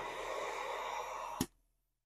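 Central vacuum system's floor sweep inlet running: a steady rush of air drawn in for about a second and a half, cut off with a sharp click.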